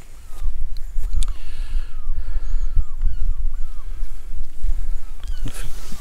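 Wind buffeting the microphone in a steady low rumble, with a few faint, short, falling bird calls in the background.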